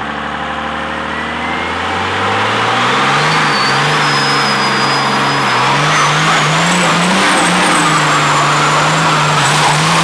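Second-gen Cummins 5.9 diesel with compound turbos revving up hard and held at high revs during a burnout, rear tires spinning on pavement. The engine note climbs over the first two or three seconds and then holds, wavering slightly, while a high turbo whistle rises steadily in pitch.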